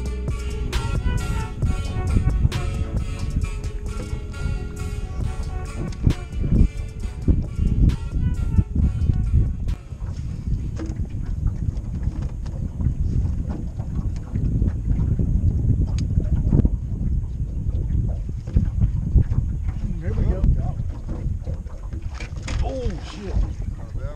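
Guitar-and-drum background music for about the first ten seconds, then it cuts to a steady low wind rumble buffeting the microphone out on an open boat. Faint voices come in near the end.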